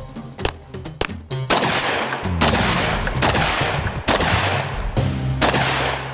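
Gunshots fired one after another, each with a trailing echo, heard over background music with sustained low notes.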